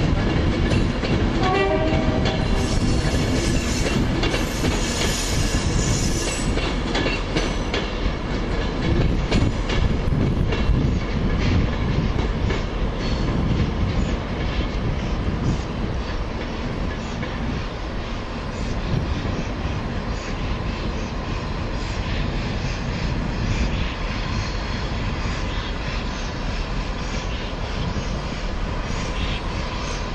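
Steam locomotive 35028 Clan Line, a rebuilt Merchant Navy class, moving slowly with its train over pointwork. There is a short pitched blast about a second in and a hiss of steam from about three to seven seconds in, then a steady rumble and clatter of wheels over the rail joints.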